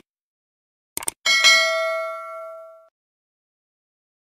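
Sound effect of a couple of quick mouse clicks about a second in, then a bright notification-bell ding that rings out and fades over about a second and a half, the sound of a subscribe button being pressed.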